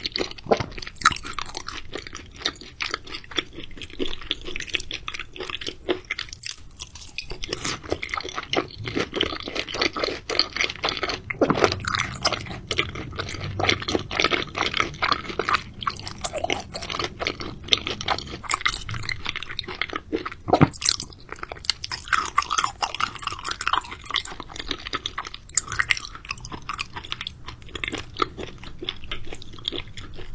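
Close-miked chewing of raw seafood sashimi: wet mouth sounds with many quick, irregular clicks and smacks, a few of them louder.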